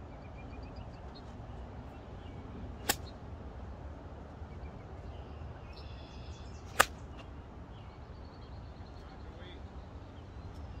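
An 8 iron striking a golf ball off fairway grass: one sharp click about seven seconds in, with a lighter click about three seconds in. Wind rumbles on the microphone and birds chirp faintly behind.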